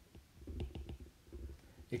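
Faint, irregular clicks and light taps of a stylus on a tablet while handwriting a word.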